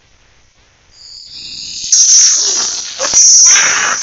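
Loud, noisy, distorted audio from the warped logo-effect video playing on the computer. It swells up out of near quiet about a second in and is at full loudness from about two seconds.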